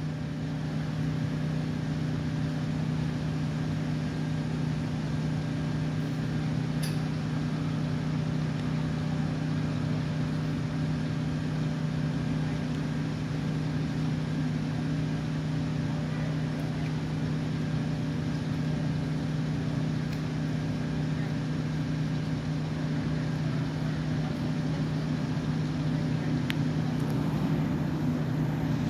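Steady, unchanging low hum of an idling utility bucket truck's engine.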